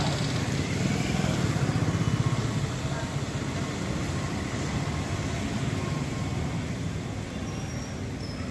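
A motor vehicle's engine running close by over general street traffic noise, loudest about two seconds in and then easing off.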